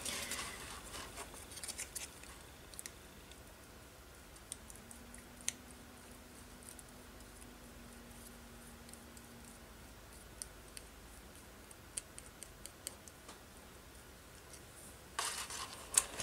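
Faint, scattered small ticks and taps from a paper cutout and a paintbrush being handled as collage glue is brushed onto the piece, over quiet room tone.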